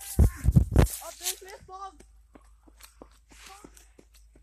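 A hand bumps and rubs the phone's microphone for under a second near the start, with a few loud thumps. Short snatches of faint talk follow.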